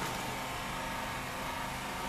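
Steady mechanical hum and hiss with a faint constant tone, unchanging throughout.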